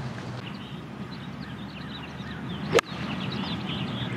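A golf lob wedge striking the ball once, a single sharp click about three seconds in. Small birds chirp faintly around it.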